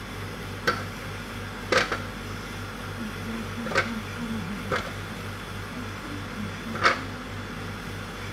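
Fresh red chillies dropped by hand into a plastic blender jug, giving five light, irregular taps over a steady low hum.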